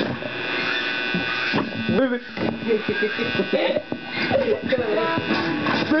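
Electric guitar playing with a buzzy, many-overtoned tone over it for the first two seconds, then wordless gliding voice sounds through a handheld microphone from about four seconds in.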